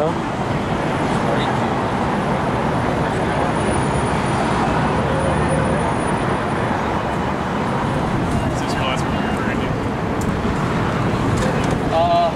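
Steady city street noise of passing traffic on a busy boulevard, with indistinct voices of people nearby.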